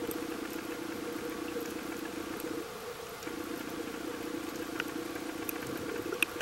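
Steady motor hum heard underwater, with a few faint scattered clicks; the hum drops away briefly a little under halfway through.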